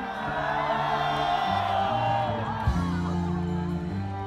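Live rock band playing with long held bass notes, and a crowd cheering and whooping over the music for the first two seconds or so before the band is heard on its own.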